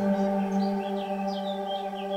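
Several bell tones ring on and slowly fade, with a bird chirping a quick run of short high notes over them.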